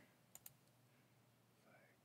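Two faint computer mouse clicks in quick succession, against near silence.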